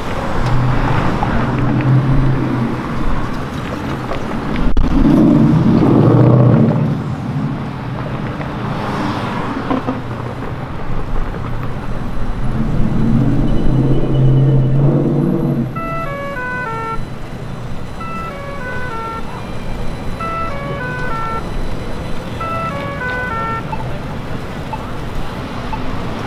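Downtown intersection traffic: cars drive through one after another over a steady roadway hum. From about two-thirds of the way in, a short run of electronic tones falling in pitch repeats about every two seconds.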